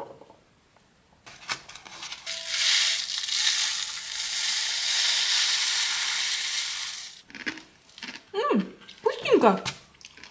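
Chocolate sprinkles poured from a cardboard box into a small glass jar: a steady hiss of tiny pieces falling onto glass for about five seconds, after a few light clicks.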